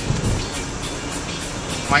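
Inside the cabin of a 2008 Chevy Equinox with a 3.4-litre V6, driving along a road: a steady rush of road and tyre noise with the engine under it, and a brief low thump about a quarter of a second in.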